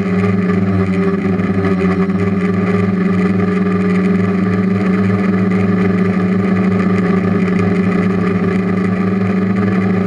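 DJI F450 quadcopter's brushless motors and propellers in flight, a steady droning hum holding a nearly constant pitch, picked up by a camera mounted on the frame.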